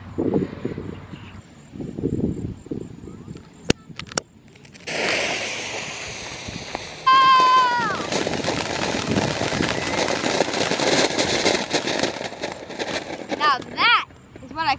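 Ground fountain firework spraying sparks: a sudden steady hiss with dense crackling that starts about five seconds in and grows louder at about seven seconds. Just as it grows louder, a short tone falls in pitch.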